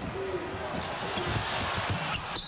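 Arena crowd noise during live play on a hardwood basketball court, with a ball being dribbled and short squeaks and knocks from play on the floor.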